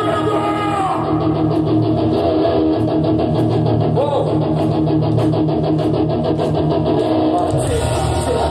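Heavy metal band playing live: electric guitars, drum kit and a vocalist, with a run of fast, even drum strokes through the middle.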